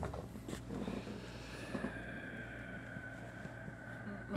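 Two men breathing heavily through their noses close to the microphones ("dad breathing"), with a couple of faint ticks from a stylus on a tablet early on.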